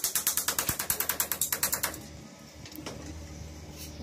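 A rapid run of ratchet-like mechanical clicks, about eight a second, that stops about two seconds in.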